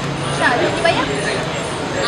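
A young woman speaking a short line in Malay, calling her friend to go and pay, over steady outdoor traffic noise.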